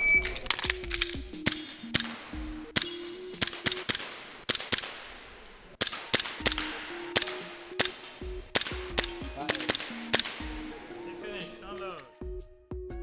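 Tokyo Marui Glock gas-blowback airsoft pistol firing a fast string of sharp pops, often in quick pairs, that runs for about ten seconds. Background music with a steady bass line plays under the shots.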